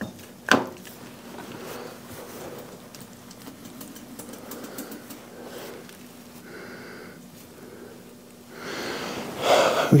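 Hand work on a tractor transmission housing: a single sharp metallic click about half a second in, then faint clinks and rustling of gloved hands and tools on metal parts, over a faint steady hum, with louder handling noise near the end.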